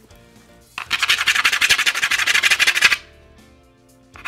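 A quarter's edge scraped hard and fast back and forth across the surface of a luxury vinyl plank, a rapid rasping scrape starting about a second in and lasting about two seconds: a scratch test of the plank's wear layer.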